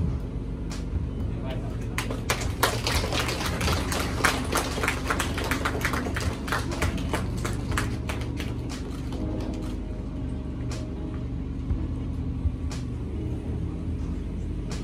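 Scattered hand-clapping from a small audience, growing dense a couple of seconds in and thinning out over the last few seconds, over a low steady hum.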